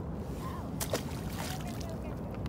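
Steady low outdoor rumble with a single short, sharp knock a little under a second in.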